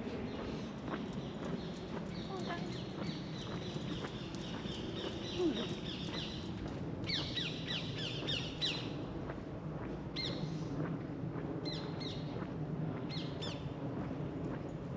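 Songbirds singing in woodland: quick runs of high chirping notes, the loudest run a little past halfway, then short bursts of falling notes. Underneath is a steady low background murmur.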